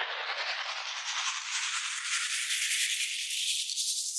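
A rising whoosh sound effect: a hiss with a fine, rapid rattle in it, climbing steadily in pitch.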